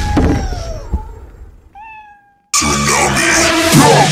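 A knock about a second in, then a single short cat meow falling in pitch at the end. Just past halfway, loud music cuts in suddenly.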